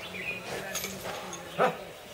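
A single short, loud animal call about one and a half seconds in.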